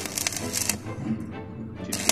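Stick (arc) welder crackling as an electrode tack-welds a square steel tube joint. It comes in two bursts, one in the first second and another starting just before the end.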